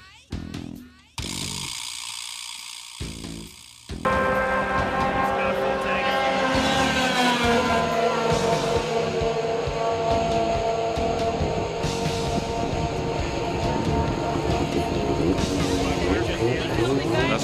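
Guitar music for the first few seconds, then a snowmobile engine running hard at high revs as the sled skims across open water, its pitch sliding down as it passes.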